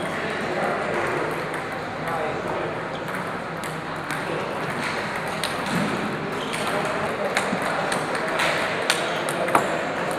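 Table tennis rallies: the light, sharp clicks of celluloid balls struck by rubber paddles and bouncing on the tables, coming at an irregular pace, over voices talking in the background.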